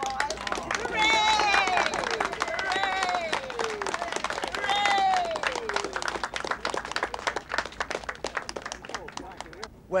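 A small crowd clapping, with voices cheering over it: three long calls, each falling in pitch, in the first half, and the clapping thinning out toward the end.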